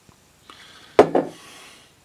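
Glassware set down on a wooden table after pouring: a sharp knock about a second in, a smaller second knock just after, with faint handling rustle around it.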